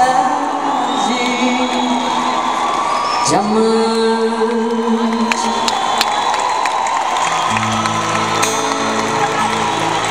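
Live concert music of sustained held chords from the stage, with a rising slide about three seconds in and deeper held notes coming in near the end. An arena audience cheers and whoops over it, close around the recording phone.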